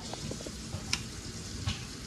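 Pot of crawfish boil bubbling in seasoned water, with an even hiss and a couple of light clicks, about a second in and near the end.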